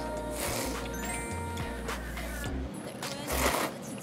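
Background music under a person slurping ramen noodles from a bowl in short noisy pulls, the loudest slurp near the end.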